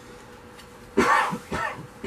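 A man clearing his throat: a loud rasping burst about a second in, followed by a shorter second one.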